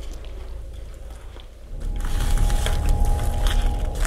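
Old plastic packaging crinkling and rustling as it is moved, over low handling rumble, the crackle starting about halfway through along with a faint steady tone.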